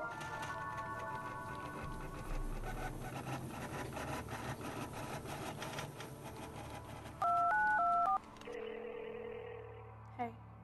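Background music with a quick beat. About seven seconds in comes a short run of loud touch-tone keypad beeps as a desk telephone is dialled, followed by a steady tone from the line.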